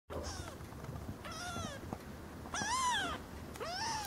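A young kitten mewing: four thin, high-pitched mews, each rising then falling in pitch, the third the loudest and longest.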